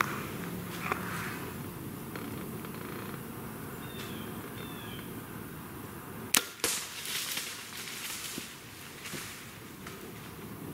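A compound bow being shot: one sharp crack a little past halfway through, a second knock a moment after it, then a short rustle. Dry leaves rustle faintly underneath throughout.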